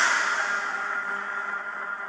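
Film-trailer sound design: a held drone with echo, fading away steadily after a run of hard hits.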